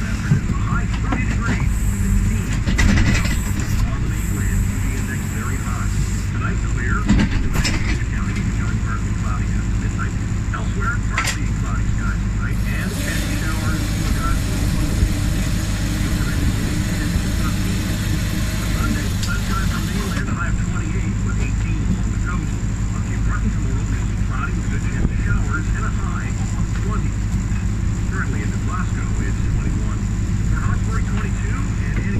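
Lobster boat's engine running steadily with a constant low hum while the trap hauler pulls up rope, with a few sharp knocks and clatter as the trap comes over the rail.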